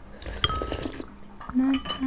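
A spoon clinks once against a ceramic bowl about half a second in, leaving a short ringing note, followed by soft clatter of spoons in food.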